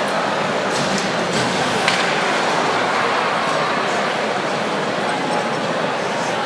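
Hockey arena crowd ambience: a steady, dense murmur of many voices talking at once, with a few brief clicks, the clearest about two seconds in.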